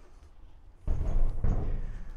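Motorcycle front wheel and tyre rolling across a wooden board floor: a low, rough rumble that starts a little under a second in.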